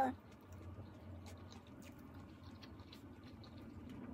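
Faint chewing of a shrimp taco, with scattered small mouth clicks, over a low steady hum.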